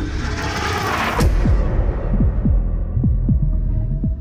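Horror-trailer sound design: a high whooshing swell with a sharp hit about a second in, fading away, over a low heartbeat-like throb of paired thuds falling in pitch, a pair a little faster than once a second.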